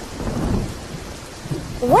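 Steady heavy rain falling, with a low rumble of thunder about half a second in.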